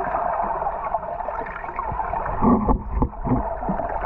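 Muffled underwater noise picked up by a GoPro submerged in a swimming pool: a steady dull watery rush with bubbling. A few dull thumps come between about two and a half and three and a half seconds in, from a child splashing and blowing bubbles close to the camera.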